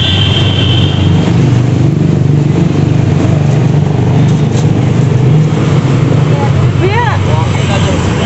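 Steady, loud low rumble of street traffic and market bustle, with a brief high steady tone at the start and a voice near the end.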